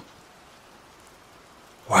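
Steady rain, a faint even hiss, with a man's voice saying "Wow" at the very end.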